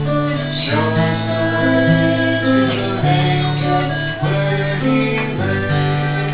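Acoustic guitar strummed in a chordal accompaniment to a Christmas song, the chords changing every second or two.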